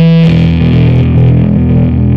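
Instrumental rock/metal music: distorted electric guitar with bass playing a sustained riff, moving to a new chord right at the start.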